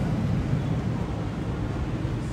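Steady low rumble of restaurant background noise.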